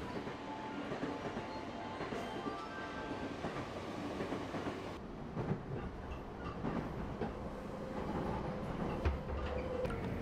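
Commuter train noise: the steady running sound of rail cars, heard at the platform at first and then from inside the moving carriage from about halfway through.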